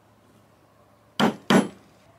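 Two sharp knocks, a little over halfway through and about a third of a second apart, like a hard tool striking a hard surface.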